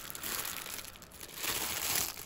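Clear plastic bag crinkling as hands handle and unwrap a sponge bottle brush, louder near the end.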